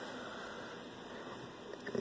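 A faint, steady hiss from a running 16 MHz solid-state Tesla coil rig, its small plasma flame burning at the wire tip.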